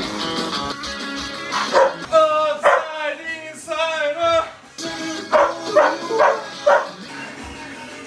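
A dog barking at a person in a run of loud barks, one drawn out longer, over background music.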